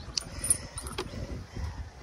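Handling noise as plastic fishing gear is moved about in a kayak's crate: a few light clicks and knocks over a low rumble.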